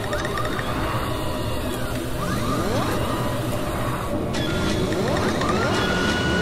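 Sound effects for an animated logo: steady mechanical whirring with repeated rising sweeps. A steady high tone joins a little past the middle.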